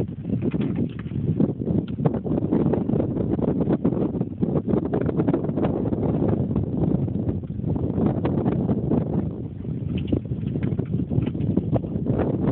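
Wind buffeting a phone's microphone: a continuous, uneven low rumble with crackle, dipping briefly a few times.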